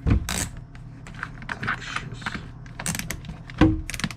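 Irregular clicks and knocks of a cordless drill and a plastic drum drain-auger attachment being handled and fitted together, with a louder knock near the start and another near the end.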